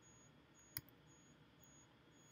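Near silence: room tone with a faint, high-pitched beep repeating about twice a second, and a single computer mouse click a little under a second in.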